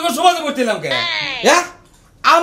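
A man's loud, animated voice with exaggerated swings in pitch: a long falling tone, then a sharp upward sweep about a second and a half in, before it breaks off.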